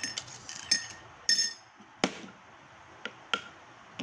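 Metal spoon clinking against a ceramic bowl of champorado as it is stirred and scooped: several ringing clinks in the first second and a half, a sharper knock about two seconds in, and a couple of lighter taps near the end.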